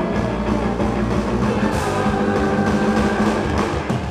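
Live rock band playing: electric guitar and drum kit, with a steady low bass line, and a brief break right at the end.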